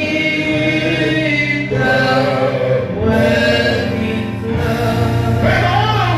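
Gospel song sung by a group of voices with steady instrumental backing, the singers holding long notes.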